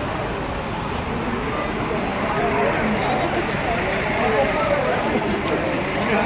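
Chatter of a queuing crowd of passengers over the steady noise of running bus engines.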